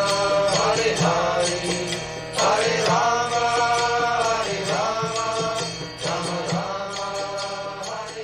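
Closing devotional music: a sung chant with long held notes that bend in pitch, over steady instrumental accompaniment.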